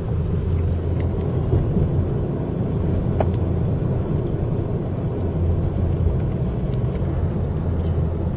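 Steady low rumble of a car driving, heard from inside the cabin, with a light click about three seconds in.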